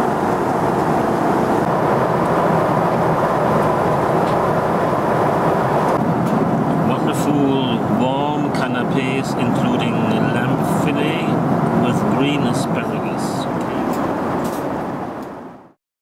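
Steady in-flight cabin noise of a Boeing 777-300ER: the rush of airflow and engines. It fades out near the end.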